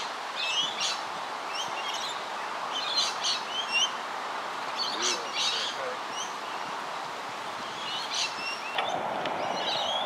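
Birds chirping in short, scattered phrases over a steady outdoor background noise, which grows louder near the end.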